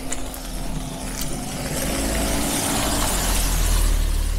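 A car driving past close by on a wet road, its tyres hissing on the wet asphalt. The hiss and a low engine rumble grow steadily louder as it approaches, loudest near the end as it passes.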